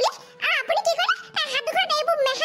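A high-pitched, sped-up cartoon voice talking quickly, with faint background music.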